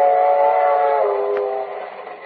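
Steam locomotive whistle sound effect: one long blast of several notes sounding together. The upper notes stop about a second in, and the lowest note fades out.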